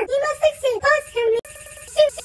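Chopped voice sample edited in the style of a Sparta remix, its syllables tuned to one held note. About one and a half seconds in, it breaks into a rapid stutter of a single clipped fragment over hiss.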